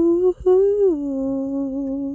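A person humming a slow, wordless homemade tune: a few held notes with a brief break, then a slide down to a lower note that is held for over a second.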